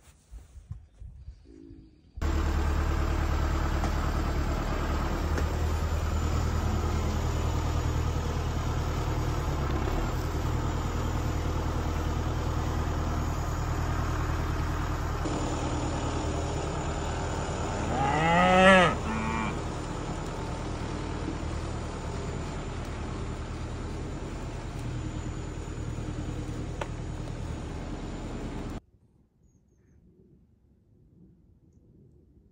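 An engine running steadily. About two-thirds of the way through, a Highland cow moos once in a single call that rises and falls, the loudest sound here.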